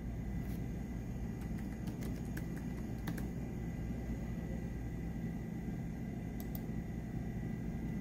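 Computer keyboard typing: a run of keystrokes in the first three seconds, then two more clicks a little past the middle, over a steady low room hum.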